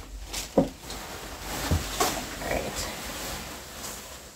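Rustling of layered wedding-dress tulle as it is gathered and spread by hand, with one short, loud sound falling in pitch about half a second in and a low thump a little later.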